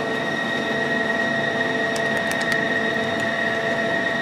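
Steady machine hum with a constant high whine from an idle CNC lathe, with a few faint clicks of control-panel keys being pressed about two seconds in.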